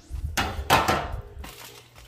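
Metal half sheet pan being taken from the oven and set down: a clatter of metal with two sharp knocks, the second and loudest about three-quarters of a second in, fading out after about a second and a half.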